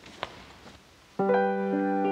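A church prelude begins on a keyboard instrument: after a quiet second with one faint click, a chord sounds about a second in and is held steady.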